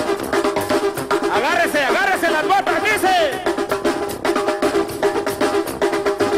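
Duranguense band music played live and loud, with a steady drum beat. A voice calls out over it with rising and falling pitch in the first half.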